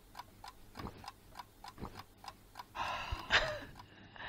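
A clock ticking quickly and evenly, about four ticks a second. About three seconds in come two short breathy sounds, the second one louder.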